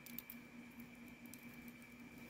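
Faint small clicks of a gold-tone chain bracelet and its clasp being handled by fingers, over a steady faint hum.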